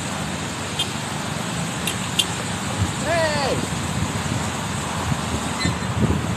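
Steady road traffic passing on a busy city street. About three seconds in, a short vocal sound from a person rises and falls in pitch.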